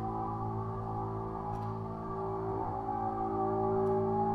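Ambient drone music from cello, double bass and live electronics: many sustained tones held and layered together, slowly shifting, with a faint tick about a second and a half in.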